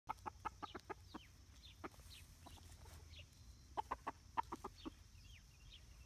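Chickens clucking in two quick runs of short clucks, the first early and the second a little past the middle, with a few faint higher calls between.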